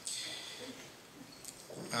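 A pause in a man's speech: the echo of his last words fades in a large room, then faint room tone, before his voice comes back at the very end.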